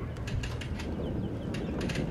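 Open-air ambience of steady, low wind rumble on the microphone, with scattered light clicks and a few short high chirps a little past a second in.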